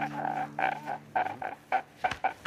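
A man sobbing in short, choked, broken cries over a low steady tone that stops near the end.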